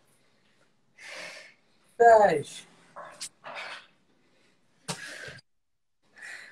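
A woman breathing hard in short puffs while exercising, with one loud vocal cry that falls in pitch about two seconds in, the loudest sound here.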